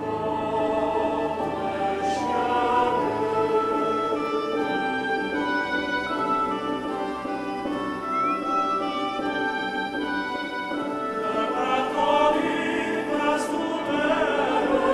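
A recording of classical choral music played back over the PA: several voices holding long, slow notes with instruments underneath.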